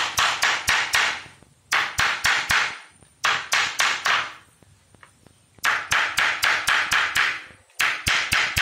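A small hammer tapping a thin German silver (nickel silver) sheet. It gives bright metallic strikes in four quick runs of about five to ten blows each, roughly five a second, with short pauses between runs.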